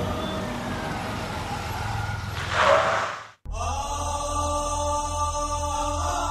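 Dramatic background score with sustained chant-like tones. About halfway through it swells into a loud whoosh and cuts off sharply, then new music starts with long held tones over a low pulsing beat.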